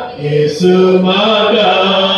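Slow, chant-like hymn singing with long held notes. There is a brief break just after the start, and then lower held notes come in.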